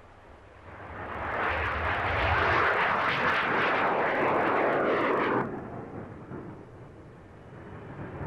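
Dassault/Dornier Alpha Jet's twin Larzac turbofans running at full power as the jet takes off and climbs past. The jet noise swells up over the first second or two, holds loud for several seconds, then cuts off abruptly about five and a half seconds in, leaving a quieter rumble.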